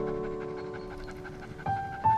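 Soft piano music: held notes slowly fade away, and a new note is struck about one and a half seconds in.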